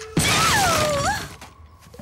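Cartoon sound effect of a wooden garden shed bursting apart: a loud crash and clatter lasting about a second, with a wavering tone that dips and then rises through it.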